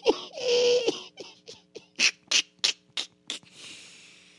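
A man laughing off-mic in short breathy bursts, about three or four a second, trailing off into a fading breath.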